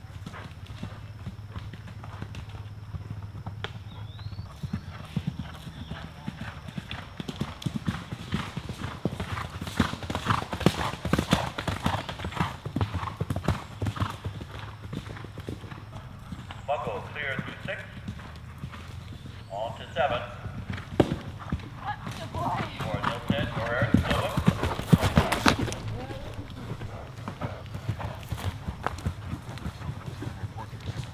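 Hoofbeats of an event horse cantering and galloping on turf, a fast run of strikes that is loudest about a third of the way in and again near the end. Voices can be heard over the hoofbeats in the second half.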